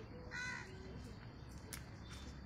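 A bird calls once, briefly, about half a second in, over faint outdoor background.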